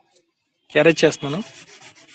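One short spoken word, followed by a soft, brief rubbing scrape across paper.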